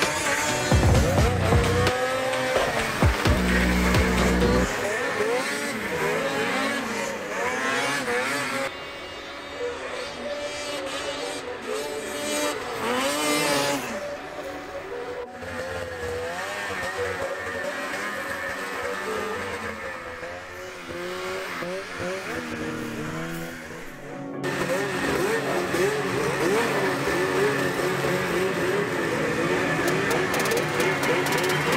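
Racing snowmobiles' two-stroke engines revving hard and backing off again and again through the corners and past the camera, the pitch rising and falling repeatedly, over background music.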